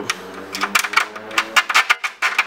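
A quick run of sharp, light clicks and taps from fingers working at a bolt hole in a car's trunk lid, bunching closer together in the second half.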